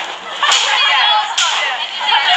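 Children's high-pitched voices calling out, with two sudden sharp cracks about half a second and a second and a half in.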